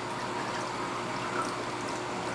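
Steady trickle and wash of circulating water in a running reef aquarium, with a faint steady hum underneath.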